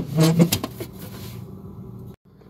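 Plastic interior cover of a Maytag refrigerator being slid into place on the compartment ceiling: a sharp click at the start and a few lighter plastic knocks over a steady low hum. A brief murmur of voice comes just after the click.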